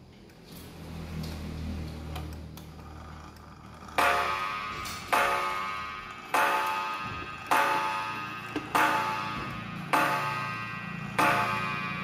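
Antique Japanese Aichi pendulum wall clock striking six o'clock on its gong: a series of evenly spaced strikes a little over a second apart, each ringing out and fading, starting about four seconds in. The pendulum ticks underneath.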